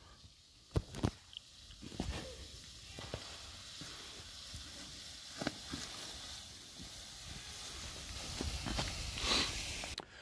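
Footsteps swishing through tall grass with a steady faint hiss, broken by a few sharp clicks or knocks, loudest about a second in and again about five and a half seconds in.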